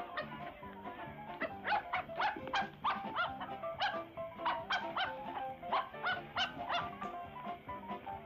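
A dog barking repeatedly in short, sharp barks, about two a second, starting about a second and a half in and stopping near the end, over background music with sustained tones.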